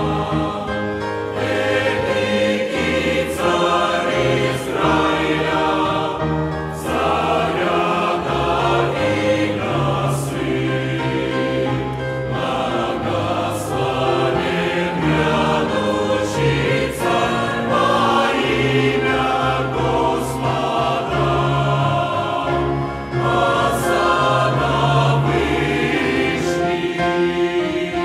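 Large mixed choir of men and women singing a hymn in Russian in full harmony, moving through long held chords.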